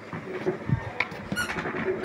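Cardboard smartphone box being handled as the black inner box is slid out of its green outer sleeve: a few short rubbing and tapping sounds of cardboard on cardboard.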